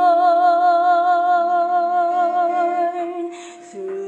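A woman's singing voice holding one long note with a slow vibrato for about three seconds, then a short breath in and a new note starting just before the end.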